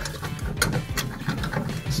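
Irregular metal clicks and scraping as a threaded rod fitted with a nut and washer is pushed against the end of a sailboat's cutlass bearing and stern tube and catches there. The washer is too big to slide through.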